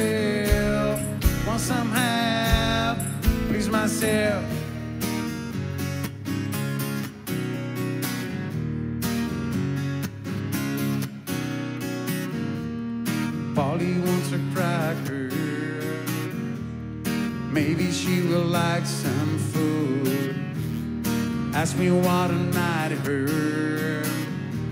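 Live acoustic guitar strummed over a low bass line, with a sung vocal near the start and again in the second half.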